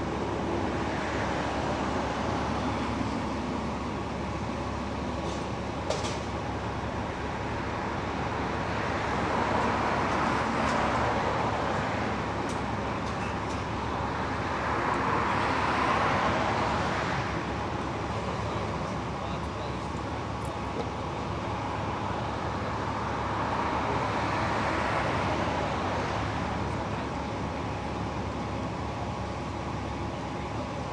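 Steady vehicle engine and traffic noise with a low hum, swelling louder three times as if vehicles pass by, under faint indistinct voices.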